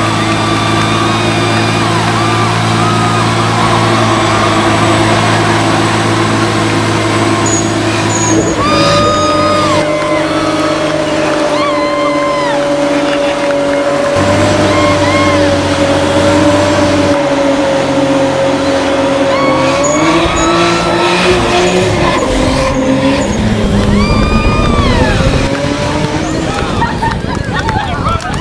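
Car engine held at high revs while the rear tires spin in a smoky burnout, with a steady tire squeal and voices shouting and cheering over it. Toward the end the engine note changes as the car pulls away.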